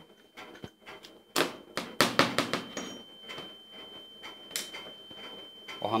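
Small metal clicks and knocks of parts being handled as the handle screw of a chrome angle valve is undone and the handle pulled off, with a cluster of sharp clicks about two seconds in and another near the end.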